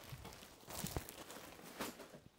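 Sleeper-sofa bed being folded up: the plastic-wrapped air mattress rustles and its metal fold-out frame moves, with a short knock about a second in.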